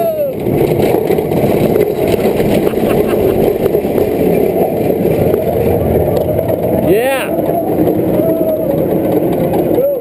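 An inverted steel roller coaster train climbs its lift hill with a steady, loud rumble. Short squeaky tones that bend up and down come about seven seconds in and again near the end.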